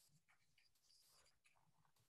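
Near silence: faint room tone between sentences.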